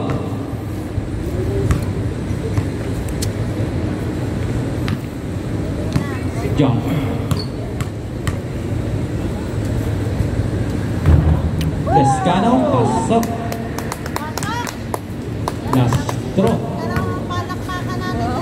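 Basketball bouncing on a concrete outdoor court during free throws, with a run of quick bounces near the end, against a background of chatter and occasional shouts from players and onlookers.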